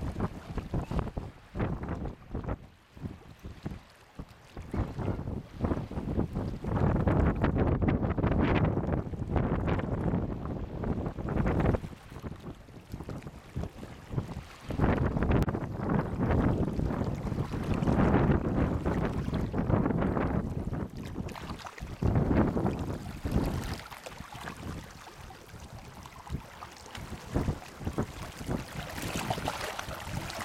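Gusty wind buffeting the microphone in uneven rushes that swell and die away every few seconds. Near the end it gives way to a steadier hiss of small waves washing over shoreline rocks.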